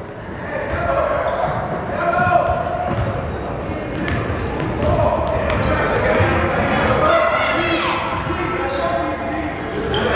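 Basketball being dribbled on a hardwood gym floor, with short sharp bounces, over raised voices from players and spectators in the gym.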